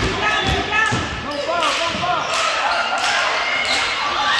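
A basketball being dribbled on a hardwood gym floor, bouncing several times at an uneven pace, over the overlapping voices of players and spectators.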